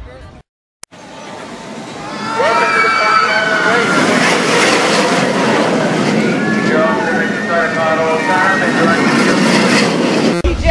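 Roller coaster train running along its track, the noise swelling over about two seconds and then holding loud, with riders screaming over it.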